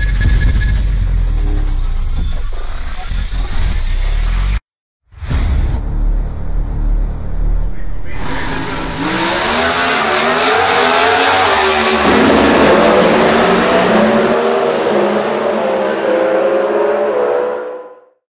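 A few seconds of bass-heavy promo music, a short dropout, then a drag car's engine revving hard under acceleration as it launches. Its pitch climbs steadily from about eight seconds in, and the sound fades out at the end.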